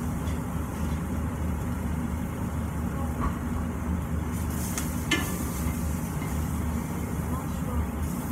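Steady low drone of a kitchen range-hood fan over faint sizzling of food frying in a stainless pan, with a couple of sharp utensil knocks about halfway through.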